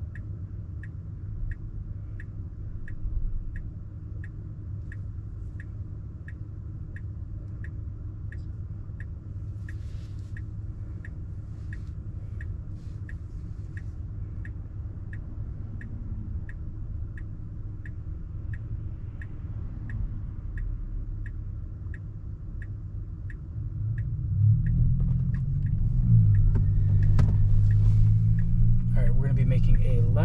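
Car turn-signal indicator ticking steadily, a little under two ticks a second, inside a Tesla's cabin while the car waits for a left turn. About twenty-four seconds in, a low road and drive rumble swells as the car pulls away.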